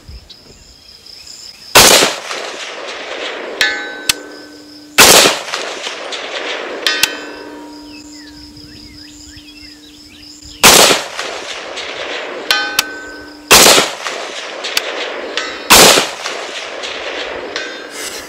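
Five shots from a PSA JAKL rifle in 300 Blackout, each followed by a long echo. Four of them are answered about two seconds later by a faint ring of a hit on distant steel; one shot, near three-quarters of the way in, draws no ring.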